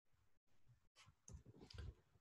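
Near silence, with a few faint, short clicks a little over a second in.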